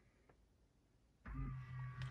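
Tesla Model 3 power-folding door mirror motors whirring steadily as the mirrors fold. The whir starts after about a second and a quarter of near silence.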